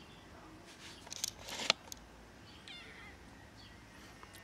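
A black-and-white kitten mewing faintly once, a short falling call about three seconds in, after a brief rustle about a second in.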